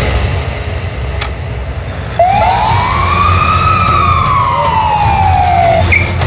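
Ambulance siren: one long wail that starts about two seconds in, rises over about a second and then falls slowly, over a low steady rumble.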